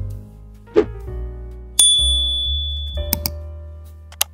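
Soft piano background music with a subscribe-button sound effect over it: a bright bell ding about two seconds in that rings for about a second, then a few quick mouse clicks.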